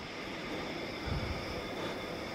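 Low, steady background noise with no distinct events.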